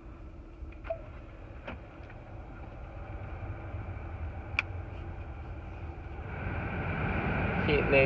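Cabin of a 2011 Lincoln MKX with the engine idling as a low steady hum, a few short clicks from the climate-control buttons being pressed. About six seconds in, the air-conditioning blower fan comes on and grows louder as a hiss.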